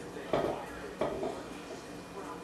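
Diced boiled potato chunks dropping off a wooden cutting board into a stainless steel mixing bowl: two soft thuds against the metal, the first about a third of a second in and the second about a second in.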